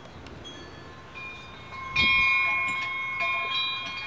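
Wind chimes ringing: several clear metal tones, struck loudly about two seconds in and again a second or so later, each left ringing on.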